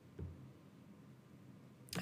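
A single faint computer mouse click about a quarter of a second in, over quiet room tone.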